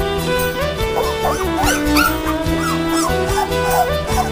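Three-week-old Labrador puppies whimpering and squeaking, in a string of short, wavering cries that start about a second in. Background music plays steadily underneath.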